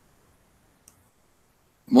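Near silence with one faint, short click about a second in; a man's voice starts right at the end.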